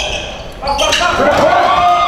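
A basketball bouncing on a hardwood gym floor during play, amid players' voices and calls, all echoing in a large hall.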